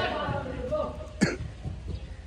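A person talking, then a single short, sharp cough a little over a second in.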